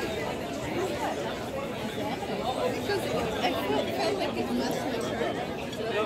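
Steady chatter of many overlapping conversations from people seated at outdoor café tables, with no single voice standing out.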